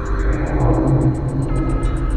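Ambient electronic music: a fast, even high ticking at about eight beats a second runs over a steady low bass drone and held synth tones. A swell of hiss rises and fades about half a second in.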